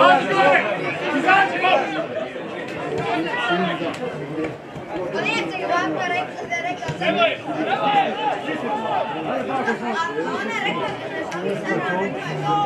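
Several people's voices talking and calling over one another, indistinct chatter, typical of spectators on the sideline of a small football ground.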